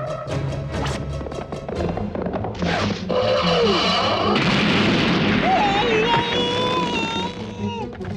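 Cartoon action sound effects over a music score: fast ticking pulses at first, a falling whistle about three seconds in, then a loud crashing burst with held, wavering tones on top that runs for about three seconds before stopping near the end.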